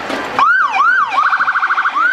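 An electronic siren sounding in a short burst, starting about half a second in: two rising-and-falling whoops, then a fast warbling yelp, then another whoop.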